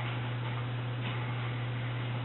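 Two faint clicks of a computer mouse, near the start and about a second in, over a steady low electrical hum and hiss.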